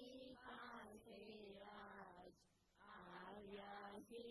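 Faint devotional chanting: short sung phrases on held notes, one after another, with a brief break a little past halfway.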